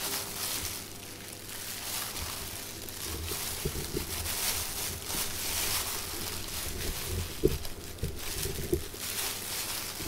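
Thin plastic waste bag crinkling and rustling as a hand inside it moves dressing items about on a paper-covered trolley, with a few light taps.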